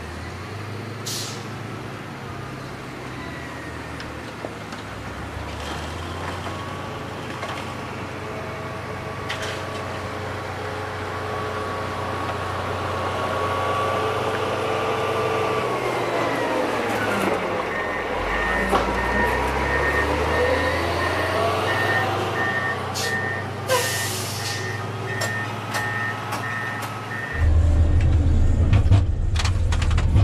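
Komatsu GD655 motor grader's diesel engine running as the machine drives closer and passes by, its pitch dipping as it goes past, with the blade cutting dirt. A regular beep repeats through the latter part, and near the end the sound switches abruptly to the louder, deeper engine rumble heard inside the cab.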